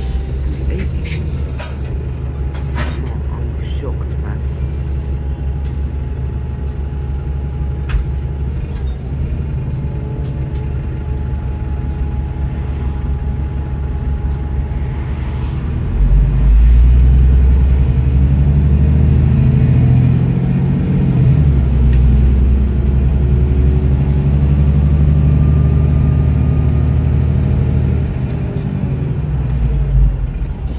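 Bus engine heard from inside the passenger saloon, running low at first. About halfway through it opens up hard under full-throttle kickdown acceleration, much louder with its pitch climbing. It eases off near the end.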